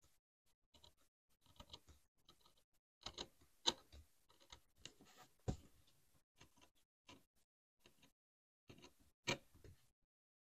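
Snap-off utility knife blade scoring a line into leather on a cutting mat: faint, irregular scratches and ticks, with louder clicks near four seconds in and again near the end. It is a shallow first pass that scores the leather without cutting through.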